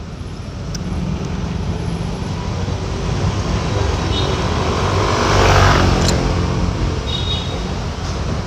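Motorcycle on the move in traffic: steady engine and road rumble, swelling and easing again about five seconds in.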